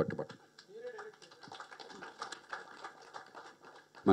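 Speech stops right at the start, leaving faint, irregular light clicks over quiet room noise, with a brief faint murmur about a second in.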